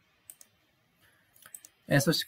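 Computer mouse clicks: one single click, then a quick cluster of two or three clicks about a second and a half later.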